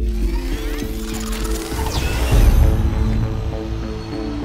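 Film sound effect of a light cycle forming around its running rider: a sudden mechanical clatter with rushing sweeps, building to a deep low surge about two and a half seconds in, over a steady synth score.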